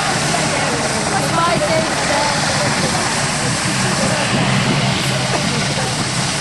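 Royal Navy EH101 Merlin HM.1 helicopter hovering for a winch lift, its rotors and turbines making a steady, unbroken noise.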